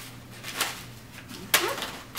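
Rustling and crinkling of packing wrapping being handled in a cardboard box, with a short rustle about half a second in and a sharper crackle about a second and a half in.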